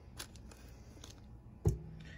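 Quiet handling noises as softened butter is scraped off its wrapper into a stainless steel mixing bowl, with a faint click early and a single sharp thump near the end.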